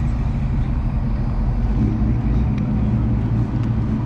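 A motor vehicle's engine idling with a steady low rumble.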